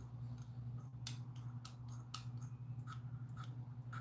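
A run of light, sharp clicks at an uneven pace, about two or three a second, over a steady low hum.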